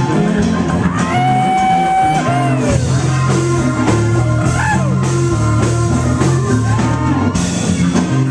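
Live funk band playing: electric guitars, bass, keyboards, drum kit and congas together over a steady bass line. A lead line carries held notes that bend in pitch, the longest held note starting about a second in.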